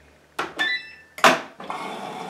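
Gorenje WaveActive washing machine: a button click with a short electronic beep about half a second in, then a louder clunk a little after a second. A steady rush of water follows as the inlet valve opens to fill the pre-wash compartment in service test step C01.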